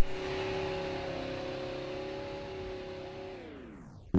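Sci-fi power-down sound effect: a steady electronic hum with hiss that slowly fades, then slides down in pitch about three seconds in and dies away.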